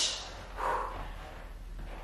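A woman's breathy exhale, about half a second in, as she punches through a workout move, over a faint low room hum.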